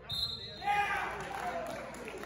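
A wrestler's body thudding onto the gym's wrestling mat near the start, with a brief high-pitched tone over it, followed by spectators shouting in the hall.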